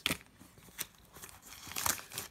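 Plastic packaging crinkling and rustling as a first aid pouch's contents are handled: a few short crinkles and clicks, with a brighter rustle near the end.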